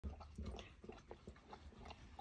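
Cheetah lapping water from a metal bowl: a quick run of faint wet laps, about four a second.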